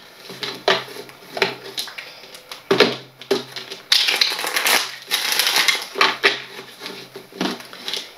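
Tarot cards being shuffled by hand: a few sharp card taps and slaps, then longer stretches of papery shuffling rustle from about four seconds in.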